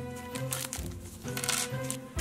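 Light background music with held tones and a slow run of low notes, with the faint crinkle of a small clear plastic parts bag being handled.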